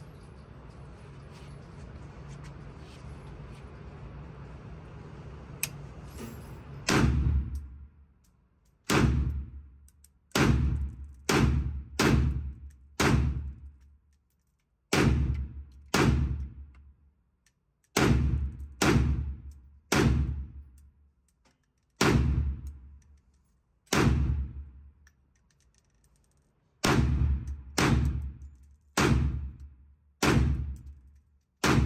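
FN SCAR 17S rifle in 7.62x51mm firing about nineteen single shots at an uneven pace, one to two seconds apart with some in quick pairs. Each shot is a sharp report with an echoing tail from the indoor range. Before the shooting starts, about seven seconds in, there is only a steady low hum.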